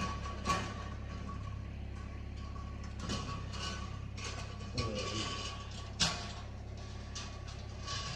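Scattered knocks, scuffs and footsteps of someone moving about a concrete-floored storeroom, over a steady low hum and a faint steady whine. The sharpest knocks come about half a second in and around the fifth and sixth seconds.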